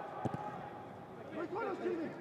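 A football kicked once, a single sharp thud just after the start, then players shouting on the pitch near the end, heard clearly because the stadium stands are empty.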